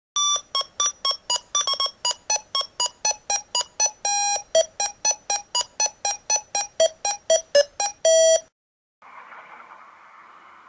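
A quick tune of electronic beeps, about four notes a second with a few held longer, its pitch stepping down overall; it stops suddenly after about eight seconds and gives way to a faint steady hiss.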